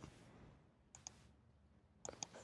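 Near silence: room tone, with a couple of faint computer-mouse clicks about a second in.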